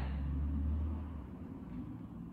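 A low rumble, strongest for about the first second, then fading away.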